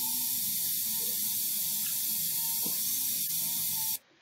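Steady hiss with a faint, steady high tone underneath, the background noise of a clinical video clip's soundtrack; it cuts off suddenly at the end.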